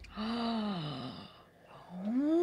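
A person's drawn-out, wordless sound of enjoyment after a sip of spiced hot chocolate, falling in pitch over about a second. Another rising vocal sound begins near the end.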